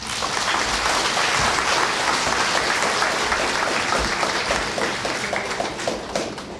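A large seated audience applauding, the dense clapping thinning out near the end.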